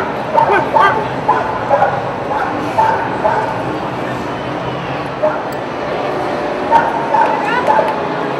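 A pit bull yipping and whining in short, repeated high calls over the chatter of a crowd.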